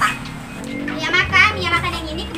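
A woman speaking in a high-pitched, comic voice over a steady background music track.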